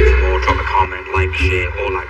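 Speech over a steady background bed that may be music, with no distinct non-speech sound standing out.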